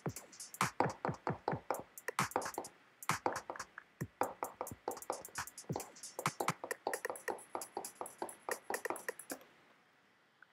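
An electronic track with a dense drum-machine beat plays from DJ software, its rhythm cut up unevenly as pad presses on a Maschine MK2 controller jump the playback. The music stops suddenly about half a second before the end.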